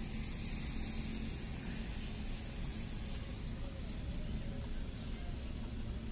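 Car engine idling at a standstill, heard from inside the cabin, with street traffic around it: a steady low rumble.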